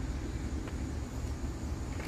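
Low, steady rumble of a train approaching from a distance down the line.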